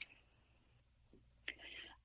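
Near silence: a pause in a woman's speech, broken about a second and a half in by a faint mouth click and a short intake of breath.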